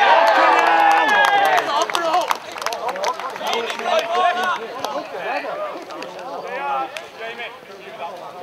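Several men shouting and cheering at once just after a goal, loudest at the start and dying down over the following seconds, with scattered sharp clicks in the first few seconds.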